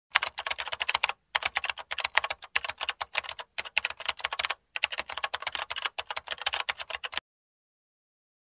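Rapid typing on a keyboard, many keystrokes a second in runs of about a second each with brief pauses between them. The typing stops suddenly about seven seconds in.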